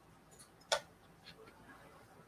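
One short, sharp click about three-quarters of a second in, otherwise very quiet: handling of a battery-powered pen-style thread burner as it is brought to the thread end.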